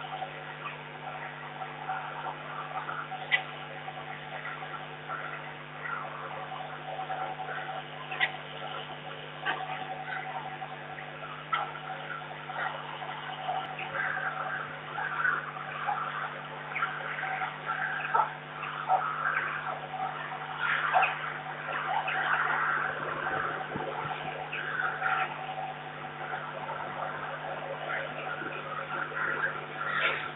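Peregrine falcon calling on and off, busier in the second half, over a steady electrical hum from the webcam, with a few sharp ticks.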